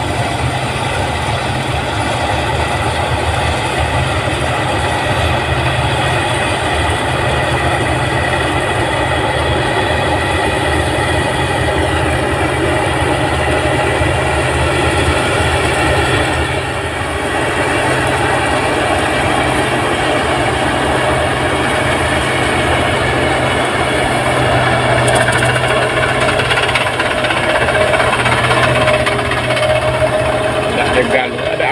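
New Holland 8060 combine harvester running at work while harvesting rice, its engine and threshing machinery making a loud, steady mechanical noise that dips briefly a little past halfway.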